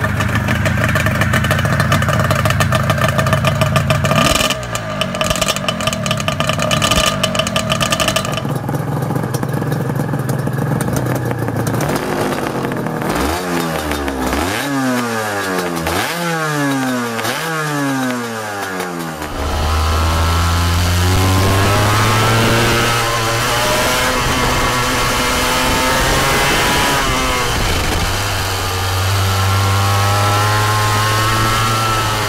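Honda NS400R two-stroke V3 engine running steadily, then a quick run of rising-and-falling throttle blips in the middle while the exhausts smoke. In the last third it runs under load while the bike is ridden, the pitch rising through the revs.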